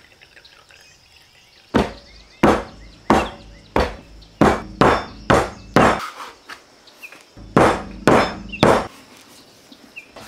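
A flat wooden paddle beating a pile of cold butter cubes flat on a floured wooden board: eight sharp strikes about two a second, a short pause, then three more.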